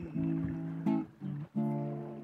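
Acoustic guitar strumming chords in a steady rhythm, with two short breaks between strums.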